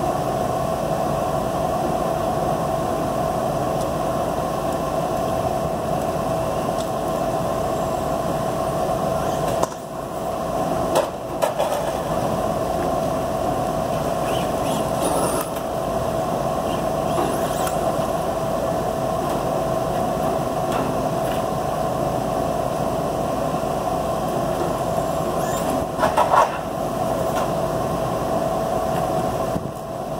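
Steady mechanical hum with one constant mid-pitched tone, briefly broken about ten seconds in and again near twenty-six seconds.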